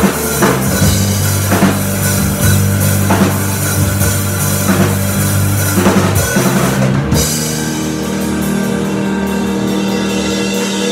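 Live rock band playing with drum kit, bass guitar and guitar. About seven seconds in the drums stop and a held chord rings on.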